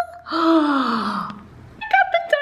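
A woman's breathy exclamation of delight: one falling 'aah' about a second long, just after a held sung note ends at the start. Her voice comes back near the end.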